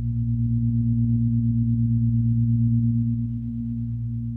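Ambient electronic music: a low, steady drone of sustained tones with a slight fast pulsing in level.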